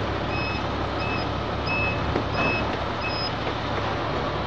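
Truck reversing alarm beeping steadily, about one and a half beeps a second, over the low rumble of truck engines; the beeping stops near the end.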